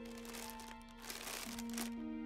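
Crinkly plastic snack bags rustling and crinkling, stopping near the end, over soft background music with held notes.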